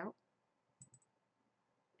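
Near silence, broken by a few faint quick clicks a little under a second in.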